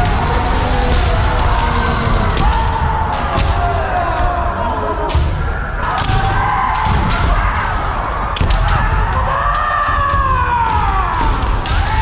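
Kendo sparring by many pairs at once: bamboo shinai cracking together and feet stamping on the wooden floor, under overlapping drawn-out kiai shouts.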